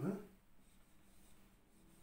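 Marker pen drawing straight lines on a whiteboard, faint, after a man's single spoken word at the start.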